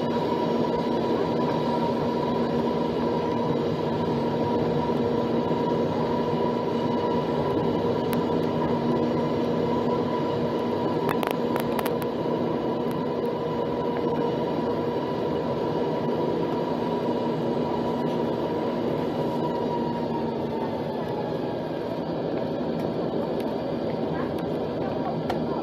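Steady cabin noise of an Embraer 195 jet taxiing, its twin turbofan engines humming with several held tones. A few brief clicks come about halfway through.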